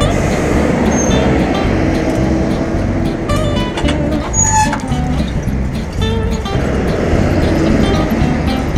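City road traffic with a bus running close alongside, mixed under background acoustic guitar music.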